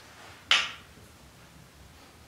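A single sharp click of a pool ball being knocked, about half a second in, as the cue ball is tapped back up the table with the cue, with a brief fading ring.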